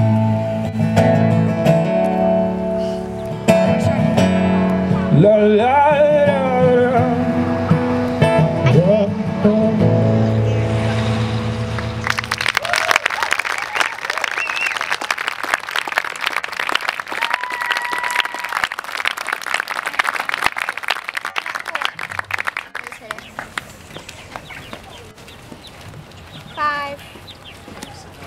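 Live acoustic band ending a song with acoustic guitar and cello. About twelve seconds in, the audience breaks into applause and cheering, which slowly dies away.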